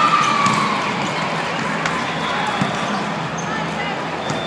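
Sound of an indoor volleyball rally in a large hall: a steady wash of voices from players and spectators, with a few sharp hits of the ball.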